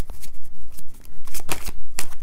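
Deck of oracle cards being shuffled by hand: a quick run of papery riffles, several a second.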